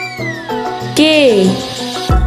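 Cheerful children's background music with a whistle-like sound effect that swoops up quickly and then slides slowly down as the letter appears. About a second in, a high voice calls out with a falling pitch.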